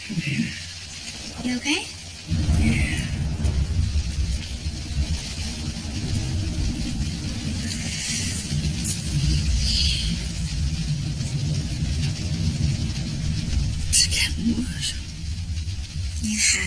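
A low, steady rumble, the kind of ominous drone laid under a horror film scene, that comes in suddenly about two seconds in and holds, with a few faint higher sounds over it.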